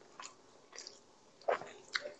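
Close-miked eating sounds of soft bread soaked in milk: a few scattered wet mouth clicks and squishes from chewing, along with the bread being pressed into the milk. The loudest click comes about one and a half seconds in, another just before the end.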